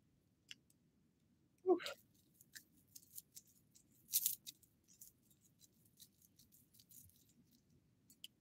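Faint rustling and small clicks of hands handling small plastic items, such as eyeglasses and a clear pouch, loudest about four seconds in. A short voice sound comes just before, near two seconds in.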